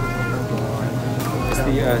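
Voices with high, drawn-out pitch, over a steady low hum.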